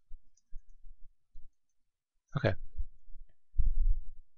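Computer mouse clicks and handling picked up by a desk microphone: a string of short, low knocks, with a brief louder noise a little past halfway and a heavier thud near the end.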